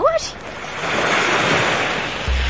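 A rushing noise sound effect swells in about half a second in and then holds steady, in the manner of surf washing in.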